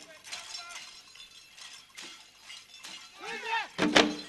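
Traditional drum-and-dance troupe performing: a quieter stretch of jingling, a voice calling out, then one loud drum beat near the end.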